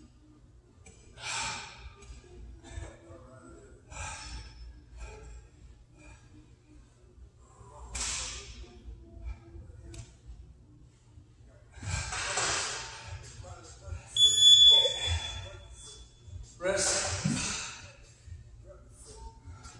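Hard exhalations every few seconds from people doing dumbbell goblet squats. About fourteen seconds in, an electronic timer beeps steadily for about two seconds, the loudest sound, marking the end of the work interval. A last heavy breath or grunt follows.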